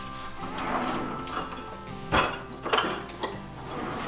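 A kitchen drawer is opened and utensils rattle as a wooden spoon is fetched, with a sharp knock about two seconds in and a couple of lighter knocks after. Quiet background music plays underneath.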